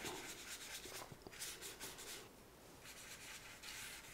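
Faint rubbing of a paintbrush scrubbing back and forth over sketchbook paper, lifting wet paint off the page.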